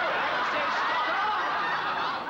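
Studio audience laughter, many people laughing together at a steady level.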